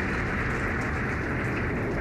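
Falcon 9 rocket's nine Merlin 1D first-stage engines firing during ascent, heard as a steady, even noise.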